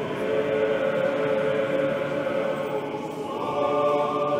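Church choir singing Orthodox liturgical chant in long, held chords, the harmony moving to a new chord a little after three seconds in.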